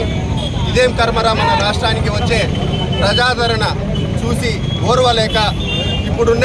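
A man speaking in phrases with short pauses, over a steady low background rumble.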